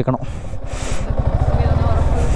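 Yamaha R15 sport bike's single-cylinder engine running under way, growing steadily louder, with a rushing hiss over it.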